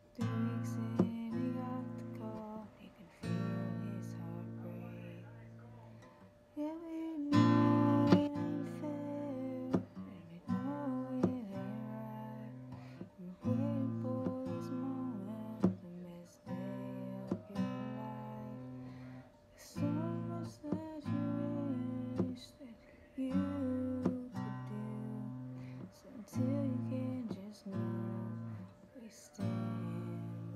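Acoustic guitar strummed by hand: chords struck every second or two and left to ring and fade between strokes.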